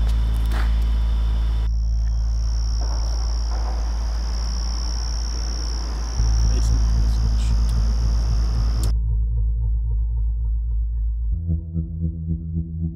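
A loud, steady low drone from the film's soundtrack, stepping up about six seconds in, with a steady high chirring of night insects over it. The insect sound cuts off about nine seconds in, leaving the drone and faint sustained musical tones.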